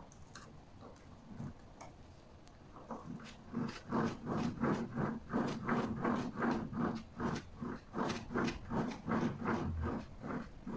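A homemade generator made from a fridge compressor's motor housing being cranked by hand. The crank and wooden frame knock in a fast, even rhythm of about three strokes a second, starting about three seconds in.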